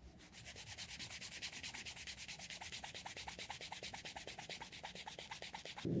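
Sandpaper rubbed back and forth by hand along the edge of a piece of leather, a fast, even scratching of several strokes a second that stops suddenly at the end.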